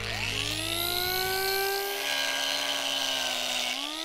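Electric angle grinder running against a wood burl: its whine rises in pitch over the first second as the motor spins up, then holds a steady, slightly sagging pitch as the disc grinds into the wood.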